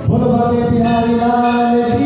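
Male voice singing one long held note of a Hindi devotional bhajan, over steady harmonium. The note starts sharply and is held almost two seconds before the next, slightly higher note.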